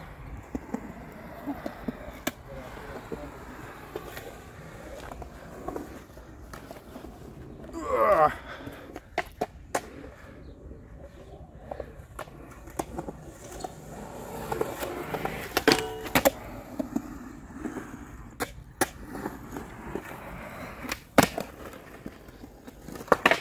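Skateboard wheels rolling over concrete, with scattered sharp clacks of the board popping and landing, and a cluster of hard clacks near the end as the board meets a metal rail. A short shout about eight seconds in.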